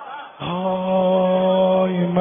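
A man's voice begins a long, steady chanted note about half a second in, in Persian maddahi (religious eulogy) style. Faint voices come before it.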